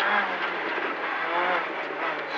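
In-cabin sound of a Renault Clio N3 rally car's four-cylinder engine running hard, its pitch dipping and then climbing again, with tyre and road noise beneath it.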